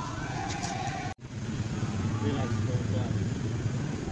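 Outdoor ambience of people talking in the background over a steady low rumble, such as traffic. The sound breaks off abruptly about a second in at an edit, then resumes.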